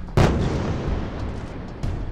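A bomb blast from an air strike: one loud explosion just after the start, followed by a long low rumble as it dies away, then a second, smaller sharp blast near the end.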